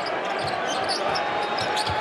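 Arena crowd noise during live basketball play, with a basketball bouncing on the hardwood twice, about half a second in and near the end, and short high sneaker squeaks.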